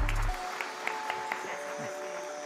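Background music: a heavy bass beat cuts out about a quarter second in, leaving held melody notes. Audience applause runs faintly beneath.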